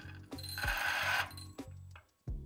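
Coffee beans trickled slowly into a DF64V grinder whose 64 mm flat burrs are already spinning, giving about a second of grinding hiss. This is the hot start and slow dosing needed to keep it from jamming at low RPM. Quiet background music plays underneath.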